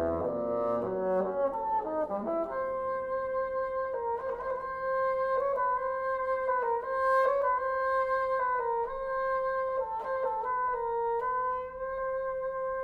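Bassoon with piano. The bassoon plays a quick run of notes, then holds a high note that keeps dipping briefly and returning, with short piano chords sounding underneath.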